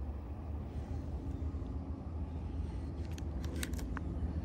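A baitcasting reel being cranked to retrieve a lure, a soft steady whir over a low rumble, with a few light clicks near the end.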